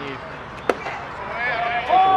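A pitched baseball pops sharply once into the catcher's mitt, and about a second later the home-plate umpire gives a loud, drawn-out shouted call of the pitch.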